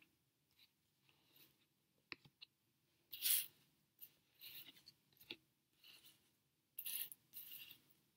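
Tarot cards sliding against each other and across a tabletop as they are drawn and laid out: a few short papery swishes and light taps, the loudest swish about three seconds in and another pair near the end.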